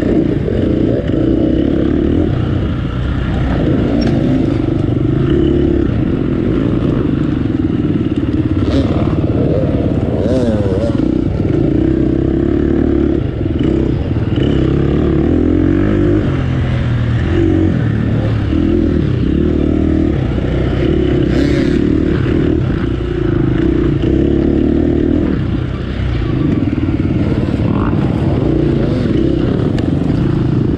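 KTM off-road motorcycle engine under hard riding: the revs climb and drop every second or two as the throttle is worked through turns, with brief dips between bursts and a few sharp clatters.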